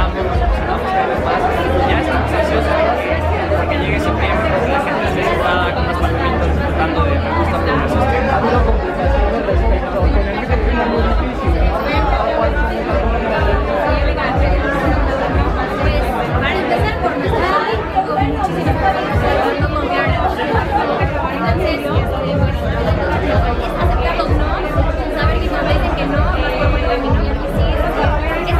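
Voices talking and chattering over loud background music; the bass is held at first, then pulses in a steady beat from about eight seconds in.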